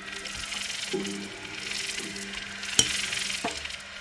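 Improvised music for electronics and snare drum played with sticks: a low pitched tone comes in about a second in under a high, clinking texture, with two sharp stick strikes around three seconds in.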